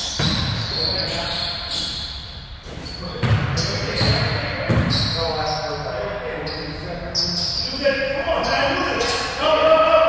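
A basketball being dribbled on a hardwood gym floor, the bounces echoing in the big hall, with a few thuds bunched together near the middle. Sneakers squeak on the court, and players' voices call out in the second half.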